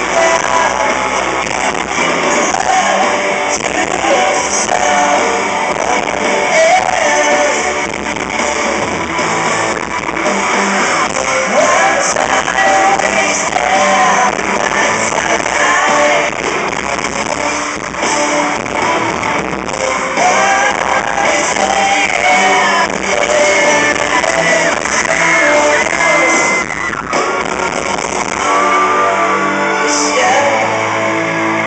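Pop-rock band playing live with electric guitar and a string section, a male voice singing lead over it. It is recorded from among the audience in a large open-air venue.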